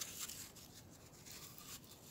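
Faint rustling and a few light taps of small things being handled and tucked under a clay tile to wedge it level.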